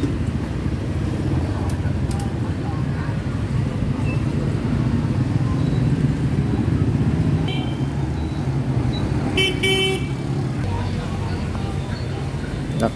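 Street traffic dominated by motorbike engines running steadily. A faint horn toot comes about two-thirds through, then a louder short horn blast, possibly two beeps, near the ten-second mark.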